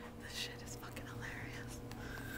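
A woman whispering in short, hushed bursts too soft to make out, over a faint steady hum.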